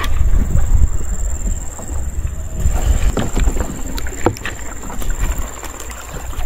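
Wind rumbling on the microphone while a gill net and its plastic float are hauled by hand over the side of a small boat on a fast-flowing river. A few sharp knocks come about three and four seconds in.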